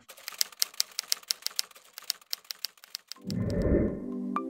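Typing sound effect: a quick run of key clicks for about three seconds as text is typed on screen, then a low rushing swell rises near the end.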